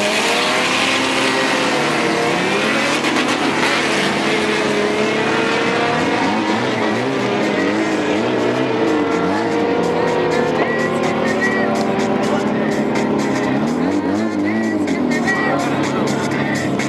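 Drag-racing car launching hard off the start line with tyre squeal, its engine note climbing as it accelerates away down the strip, heard over crowd voices.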